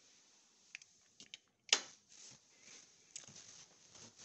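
Faint handling and footstep sounds of a person walking indoors: a few small clicks, one sharper knock a little under two seconds in, then soft scuffing steps.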